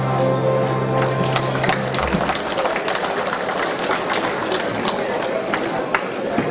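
An accordion dance band holds its final chord, which stops about two seconds in, followed by audience applause and chatter.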